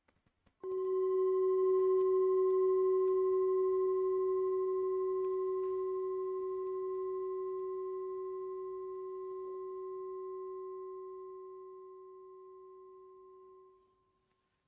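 A singing bowl struck once, ringing with a low hum and fainter higher overtones that fade slowly for about thirteen seconds before cutting off near the end.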